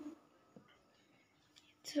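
Near silence with room tone, broken by a brief low hum right at the start and a single faint click about half a second in.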